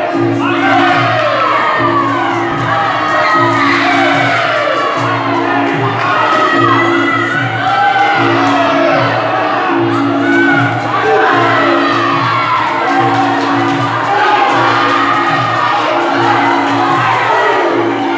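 Muay Thai fight music (sarama) playing with a low figure repeating about once a second, under a crowd of spectators shouting and cheering.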